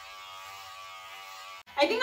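Electric hair clippers buzzing steadily while cutting hair on top of the head, stopping abruptly near the end.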